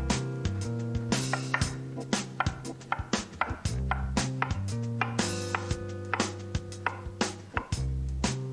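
Chef's knife chopping zucchini into small cubes on a wooden cutting board: a run of quick, sharp knife strikes, several a second, over background music with bass and guitar.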